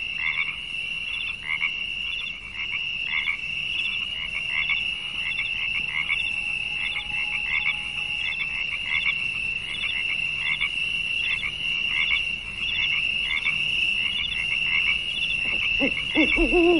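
A chorus of calling animals: a steady high-pitched trill with short chirps repeating roughly once a second.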